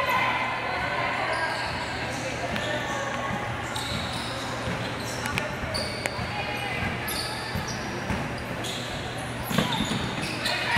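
A basketball bouncing and knocking on a hardwood gym court during play, over steady crowd chatter in a large hall, with a louder knock near the end.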